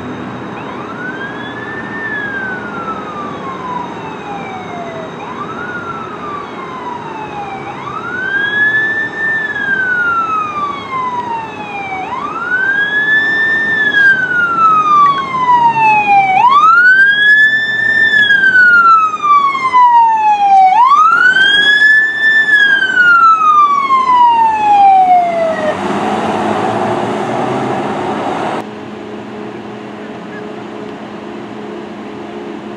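Fire engine's wail siren, each cycle rising quickly and then falling slowly, about every four seconds, growing much louder as the engine approaches. The siren stops near the end and gives way to a couple of seconds of rushing noise that cuts off abruptly.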